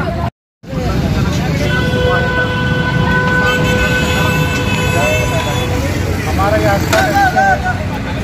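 A vehicle horn held in one steady blast for about four seconds, starting about two seconds in, over continuous street traffic noise and crowd chatter.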